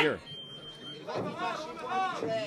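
A man's voice, then a brief, steady, high-pitched beep that signals the start of the round, followed by overlapping voices.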